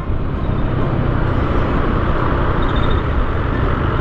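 Steady ride noise from a Yamaha scooter moving in traffic: wind on the microphone and road noise over the engine.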